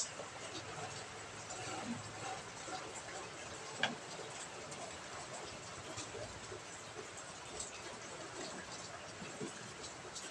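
Hamsters moving about in a wire-mesh cage: small, scattered clicks and rustles in the bedding and against the wire, with a sharper click at the very start and another about four seconds in.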